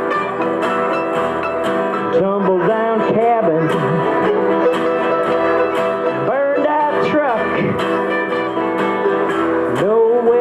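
Acoustic country string band playing live: mandolin, acoustic guitar and bass guitar in a steady instrumental passage between sung lines, with a lead melody that slides up and down in pitch.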